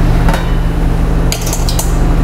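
Metal lid lifted off a stainless steel stockpot steamer, clinking against the pot several times in the second half, over a steady low hum.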